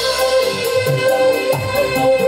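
Live dangdut koplo band music over a stage PA. A steady drum beat of about two low strokes a second runs under a held melody note, with fast regular ticks above.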